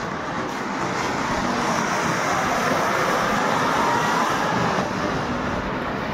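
Ground fountain firework spraying sparks with a steady hiss that builds over the first second and then holds.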